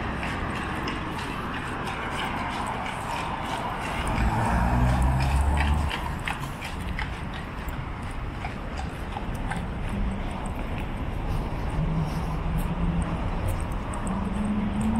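Horse hooves clip-clopping on the street as a horse-drawn carriage passes, over the steady hiss of city traffic. A car passes close about four seconds in, and its engine is the loudest sound.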